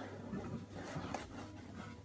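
Faint rustling and scraping of a cardboard box being handled as its lid is lifted open, with a small click about a second in.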